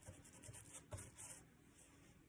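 Near silence, with a few faint scratches of a paintbrush working epoxy sealer into tree bark, most of them about a second in.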